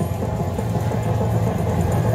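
Lock It Link Diamonds slot machine playing its free-spins bonus music, a steady low-pitched backing with no pauses.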